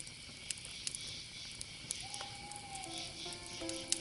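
Faint campfire crackle: a soft hiss with scattered small pops. About two seconds in, a single held tone slides slightly downward. Soft background music of held notes comes in during the last second or so.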